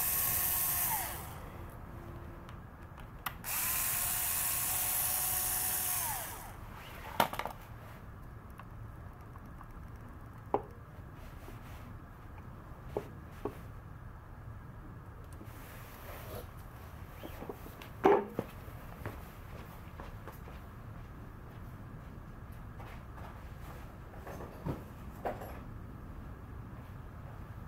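Small cordless electric screwdriver whirring as it backs out the primary inspection cover screws on a Buell XB12 engine. It makes a short run at the start and another of about three seconds a few seconds in, each winding down as it stops. After that come scattered light clicks and one louder knock about eighteen seconds in.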